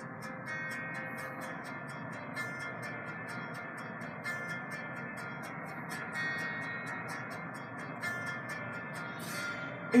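Quiet acoustic guitar accompaniment playing the song's introduction, its held chords changing every second or two, with a light, regular ticking above them.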